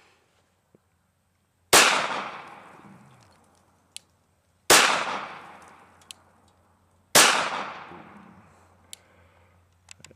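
Glock 19 9mm pistol fired three single shots a few seconds apart, each shot echoing away over more than a second.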